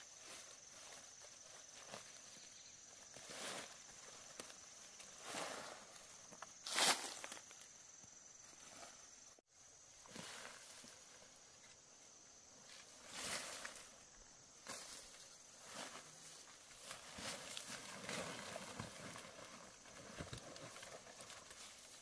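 Insects singing in a steady high drone, with intermittent short rustles and crunches like footsteps through dry forest litter; one louder crunch about seven seconds in.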